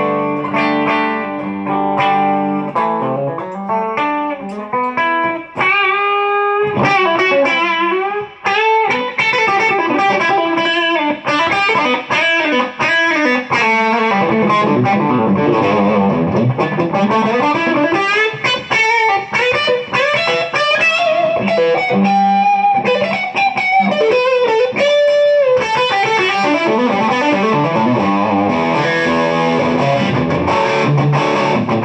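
Les Paul electric guitar played through a Fuchs ODS-II amp's drive channel. It starts as a fairly clean tone with ringing notes, then from about seven seconds in grows denser and more overdriven as gain boosts and drive are brought in. The lead lines carry frequent string bends.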